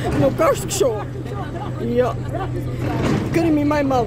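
A woman's voice speaking in an upset, tearful way, with a steady low hum running underneath.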